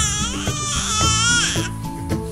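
A four-month-old baby's long, high-pitched vocal sound that dips and then rises in pitch for about a second and a half, over background music.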